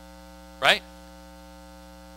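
Steady electrical mains hum with a stack of even overtones, under one short spoken word about half a second in.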